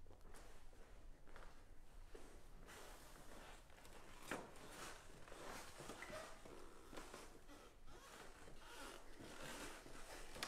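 Faint rustling and a few small clicks of clothing and a clip-on microphone being handled, against quiet room tone.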